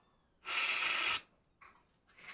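A short breath of air blown through the valve of an MTA 3250 Fiat coolant-reservoir pressure cap, hissing with a faint whistle for under a second: a mouth pressure test of whether the newly reassembled cap seals.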